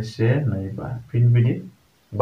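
Only speech: a man talking in short phrases, with brief pauses between them.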